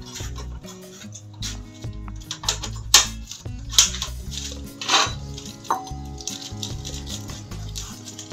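Background music with a steady low bass line, over which come four sharp clicks in the middle from a portable butane camping stove as its gas canister is fitted into place.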